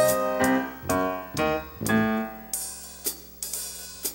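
Live band accompaniment with no vocal: piano chords over drum-kit cymbal and hi-hat strokes about twice a second, thinning out and growing quieter toward the end.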